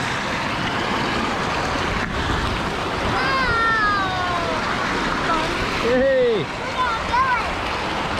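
Steady rush and splashing of water in a lazy river, with jets spraying water into the channel from the side wall, heard close to the surface. Voices call out a few times over it.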